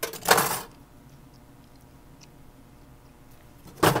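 A short burst of sound right at the start, then mostly quiet room tone with a few faint, light clicks of flush cutting snips and silver wire being handled in the fingers.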